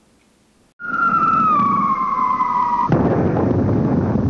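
A logo sound effect that starts after a short silence: a falling whistle over a low rumble. About three seconds in it cuts to a sudden explosion-like burst, which carries on as a steady loud rumble.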